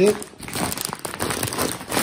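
Plastic mushroom-grow bag of wood-pellet substrate crinkling as a hand squeezes and kneads it, working the freshly injected liquid culture through the substrate. The crinkling goes on unevenly throughout.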